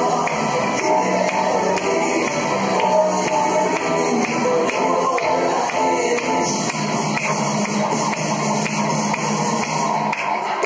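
Music with a steady beat.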